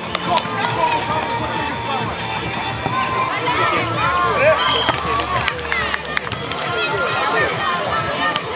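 Voices of volleyball players and onlookers calling out and talking over background music, with a few sharp slaps of hands hitting the ball.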